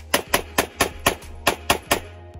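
A rapid string of about eight pistol shots, four or five a second, with a short pause just past the middle.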